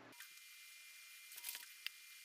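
Near silence: faint room hiss, with a few faint light clicks between about one and a half and two seconds in.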